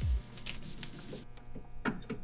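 Rubbing and light handling noises of a thick cable being moved and fitted into a robot control box, with a few short ticks.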